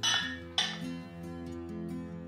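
A Royal Albert Old Country Roses bone china dessert plate set down on a pedestal riser, clinking twice about half a second apart. Background music with sustained notes plays underneath.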